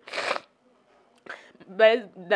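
A short rustling noise lasting about a third of a second, close to the microphone, right at the start, then a brief pause before the woman starts speaking again near the end.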